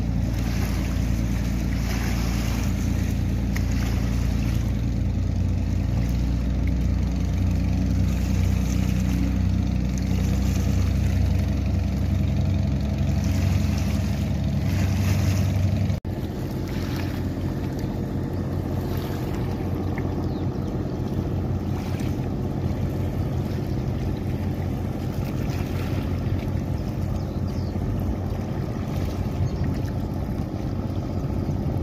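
Passing passenger boat engines running with a steady low drone over the wash of water and wind on the microphone. The sound changes abruptly about halfway through to a thinner, noisier rumble with less low drone.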